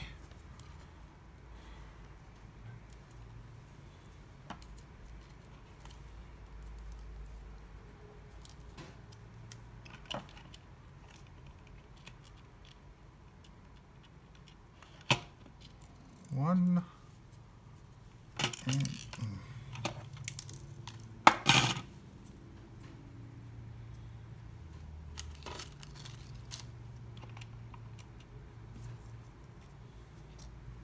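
Hands working with small hardware on a bench: scattered clicks and light rattles of screws and washers and of a plastic project-box enclosure being handled and set down. A few louder clatters come past the middle, the loudest about two-thirds of the way through.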